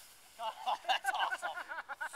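People's voices talking indistinctly, starting about half a second in after a brief lull.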